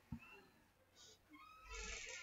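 Near silence: faint room tone, with a low rumble coming in near the end.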